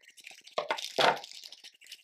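Pink tissue paper being crumpled and handled, crinkling and rustling with a louder crunch about a second in.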